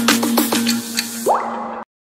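Logo sting music: a held low note under a quick run of short plinks, each falling in pitch, then a brief rising sweep near the end before it cuts off suddenly.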